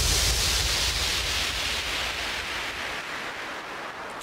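A wash of white noise over a low rumble, fading steadily away: a synthesized noise sweep in the breakdown of an electronic hardcore track.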